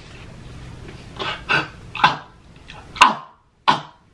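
A man's short mouth noises made with closed lips: about five brief smacks and murmurs spaced over a few seconds. The sharpest, a click-like smack, comes about three seconds in.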